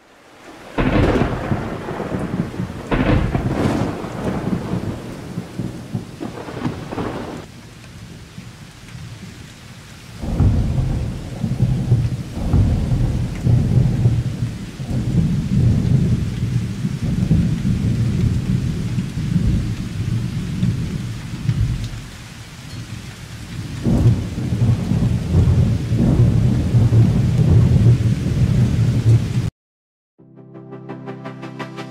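Thunderstorm: rain with rolling thunder, several separate rolls in the first few seconds, then a long continuous low rumble that dips briefly before building again and cutting off near the end.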